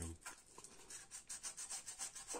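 Faint rubbing and scraping of hands working the aluminium thermostat housing on the engine: a run of short, soft scrapes repeated several times a second.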